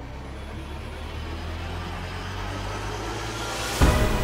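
A rising intro sound effect: a low rumble that swells steadily louder, ending in a heavy hit near the end as the backing music starts.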